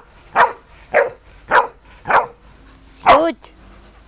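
Neapolitan Mastiff barking five times, a bark roughly every half second, the last bark a little longer.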